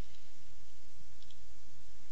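Steady hiss and low hum of a video-call audio line, with a couple of faint clicks.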